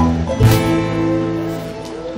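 Keroncong ensemble of acoustic guitars, small strummed cak and cuk, plucked cello and double bass playing a closing chord. It is struck again about half a second in and then rings out and fades.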